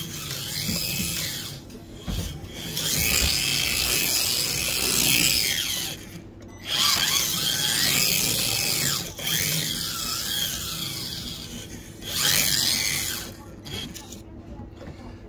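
Kyosho Mini-Z two-wheel-drive RC car's small electric motor and gears whining in about four long bursts of throttle, the pitch rising and falling, with tyres scrubbing on a smooth floor as it slides sideways and spins donuts.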